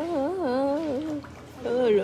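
A woman humming a wordless tune, her pitch wavering up and down. She breaks off a little past a second in and starts again on a falling note near the end.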